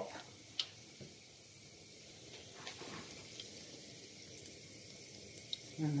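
Mustard seeds frying in a thin pool of hot coconut oil in a nonstick pan: a faint, steady sizzle with a few sharp pops scattered through it as the seeds begin to burst in the heat.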